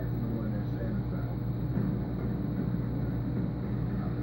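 Steady low hum with a fast, even throb, from the aquarium's air pump and filter equipment, with faint indistinct voices over it.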